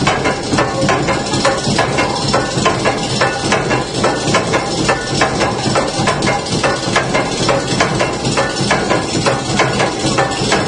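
Water-wheel-driven bone stamping mill running: a row of heavy stamps is lifted by the shaft and dropped in turn, making a steady, fast clatter of pounding blows, several a second.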